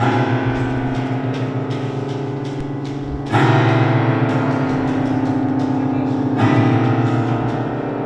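Grand piano strings struck with a mallet inside the open piano, deep low notes ringing on. New, louder strokes come a little past three seconds in and again about two-thirds of the way through.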